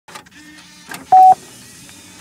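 VHS-tape-style sound effect: a couple of mechanical clicks, then a loud single-pitched electronic beep a little over a second in, lasting about a fifth of a second.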